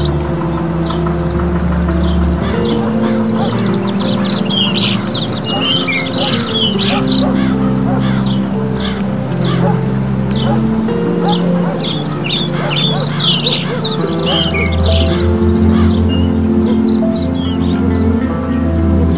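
Background music of slow, sustained low chords, with high, quick twittering bird song over it in several separate bursts of a few seconds each.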